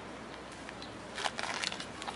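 A short burst of crackling, rustling handling noise a little past the middle, over a steady outdoor background hiss.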